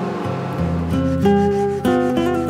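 Hand sanding along the edge of a red oak tray with folded sandpaper, a dry rubbing sound, under acoustic guitar music.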